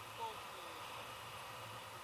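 Faint steady rush of air over a camera microphone in paraglider flight, with a brief voice sound in the first half second.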